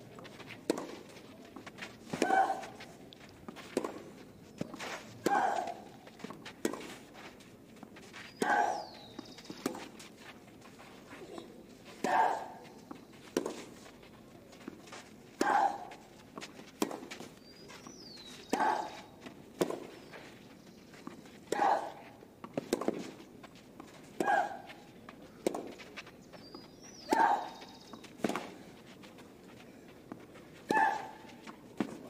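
Tennis ball struck back and forth in a long clay-court rally, a hit about every one and a half seconds. On every other stroke, about every three seconds, one player lets out a short grunt with the hit, making those strokes the loudest sounds.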